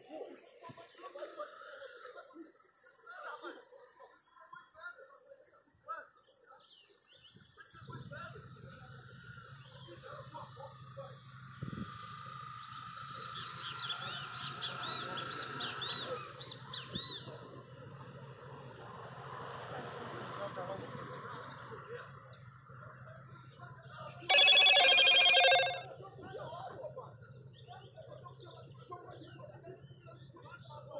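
Faint, indistinct voices of people arguing at a distance, over a steady low hum. About 25 seconds in, a loud steady tone sounds for about a second and a half.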